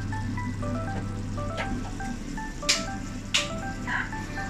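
Upbeat background music with a light melody of short, bright notes, over a steady low hum. Three short clicks or knocks come in the second half.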